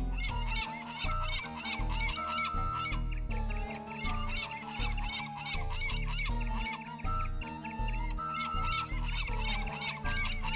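Background music for an animated cartoon: held melody notes over a repeating low beat, with quick repeated figures in the upper range.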